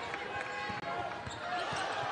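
Arena crowd chatter with a basketball bouncing on a hardwood court during live play.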